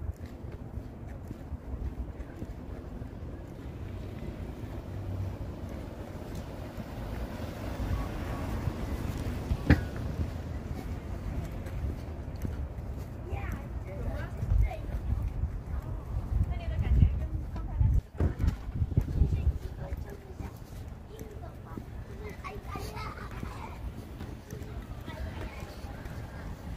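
Steady low rumble of wind and handling on a hand-held phone microphone outdoors, with faint, indistinct voices at times and a sharp click about ten seconds in.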